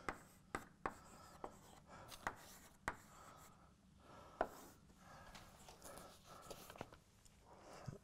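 Chalk writing on a blackboard: a string of short sharp taps with faint scratching between them, the loudest tap about four and a half seconds in.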